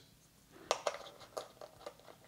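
Faint handling clicks and taps of small plastic parts: the small black tool being fitted against the back cover of a Blink Outdoor camera, about five light clicks from just under a second in.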